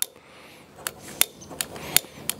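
Butane utility lighter clicking as it is held to a Coleman two-burner propane stove burner to light it: four sharp clicks, about three a second, starting about a second in.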